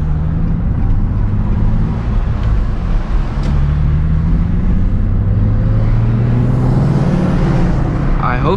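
Nissan 350Z's 3.5-litre V6 engine heard from inside the cabin as the car pulls away and drives, with road noise. The engine note rises slowly through the middle seconds, then holds steady.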